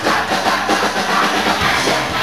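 Live rock band playing loud, with electric guitar and drum kit driving a steady beat.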